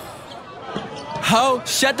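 A hip-hop track breaks off for just over a second, leaving only faint sound, then a man's rapped vocal comes back in loudly.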